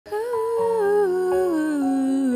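A woman's voice humming a slow, descending melody, with a steady low note held underneath from about half a second in.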